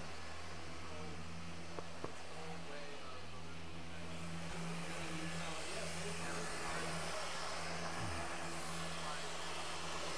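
Electric dual-action car polisher running with a steady motor hum, its pitch sagging briefly near the end as it is loaded against the paint.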